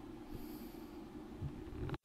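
Faint steady low hum and hiss of recording background between spoken segments, cut off abruptly by an edit at the end.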